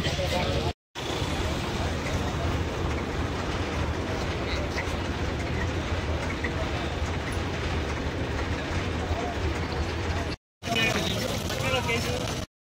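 Steady outdoor roadside noise, a low rumble with hiss. Voices talk in the background in the first second and again near the end, and the sound drops out briefly twice.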